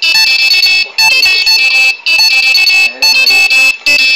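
A high-pitched electronic alarm tune, a beeping melody repeated in phrases about a second long, four times over.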